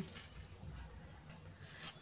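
Faint rubbing and rustling from fingers handling a small glued cardboard ring, with a louder brief rustle near the end.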